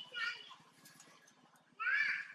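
Baby long-tailed macaque calling: a short, high-pitched cry just after the start, and a second, rising cry near the end.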